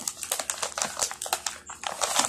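Thin plastic snack bag crinkling as it is handled and reached into: a rapid, irregular run of small crinkles and clicks.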